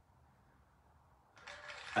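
Near silence: room tone, with a faint hiss coming in about a second and a half in.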